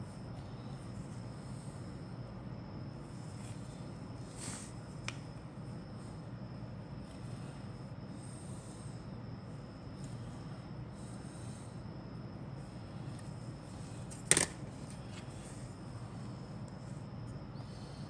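Quiet room noise with a steady low hum and a faint high whine, under soft rustles of a plastic model-kit sprue being handled. There are two small clicks about four to five seconds in, and one sharp click about three-quarters of the way through.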